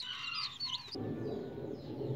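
Young chicks peeping, many short high chirps overlapping. About a second in they stop abruptly and a low steady background noise takes over.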